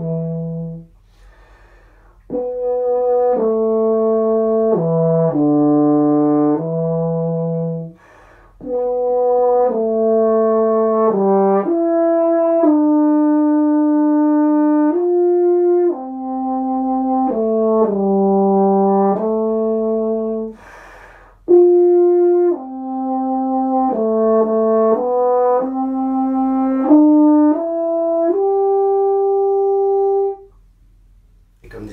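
Cimbasso played solo: a low melodic brass passage in several phrases, with three short breaks for breath, ending on a long held note.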